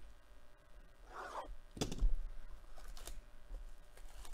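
A box cutter scraping through the plastic shrink wrap of a sealed trading-card box, with a short scrape about a second in. It is followed by a sharp knock, the loudest sound, and a few light clicks as the box and cutter are handled.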